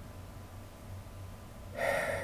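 A man's sharp intake of breath near the end, over a faint steady low hum, picked up by a webcam's microphone.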